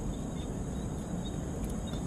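Steady outdoor night ambience: a low rumble of distant city traffic under a continuous high-pitched insect chirr.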